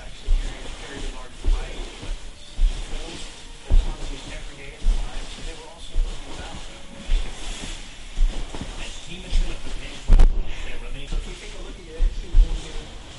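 Television audio, a man talking over background music, with low thuds about once a second as the dancer's body and legs strike the carpeted floor on each head windmill rotation; one thud about ten seconds in is louder.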